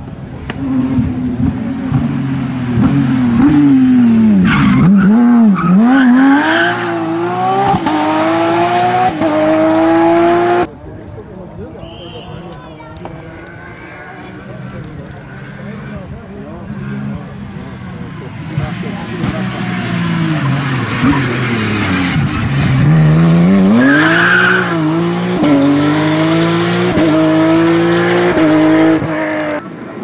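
Two rally cars pass in turn, the first a Porsche 911 GT3 with its flat-six engine. Each engine drops in revs as the car brakes and downshifts, then climbs in steps as it accelerates hard through the gears. Each pass cuts off suddenly, the first about ten seconds in and the second near the end.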